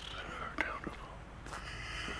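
A person walking on a paved sidewalk: a few soft footsteps under a steady faint hiss.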